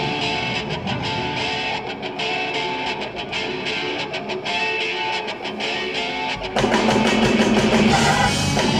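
Live blues-rock band in an instrumental break: electric guitar lines over a sparse, quieter backing with the low end dropped out, until the full band comes back in loudly about six and a half seconds in.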